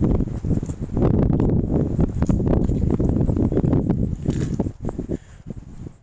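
Wind buffeting the microphone, a loud low rumble with crackling, over footsteps on grass; it dies down near the end.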